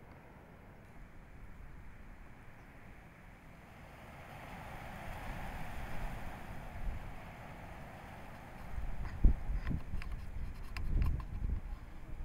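Wind buffeting an outdoor microphone: a low rumble that swells about four seconds in, then a run of heavy low thumps in the last three seconds.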